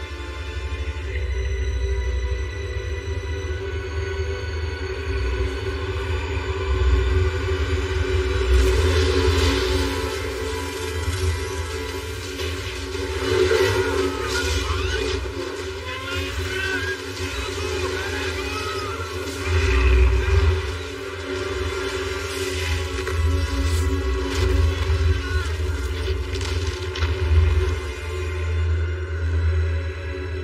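Dramatic film score music over a deep, steady low rumble.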